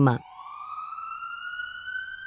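Ambulance siren sound effect: one slow wail rising steadily in pitch after a synthetic voice finishes a word.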